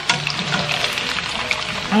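Battered pork belly pieces sizzling steadily in hot oil on their second fry, with background music.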